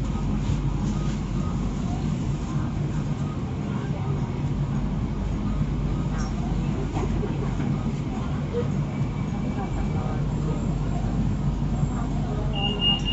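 Steady low hum inside a BTS Skytrain car standing at a station platform, with faint voices.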